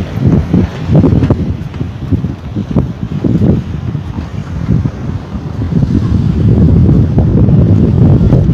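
Wind blowing over a phone's microphone, a low gusting noise that swells and dips unevenly, then holds steadier and louder for the last two seconds.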